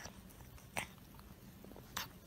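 A small poodle licking and biting at a treat on a stick: faint wet mouth clicks and laps, one sharper click about a second in and another near the end.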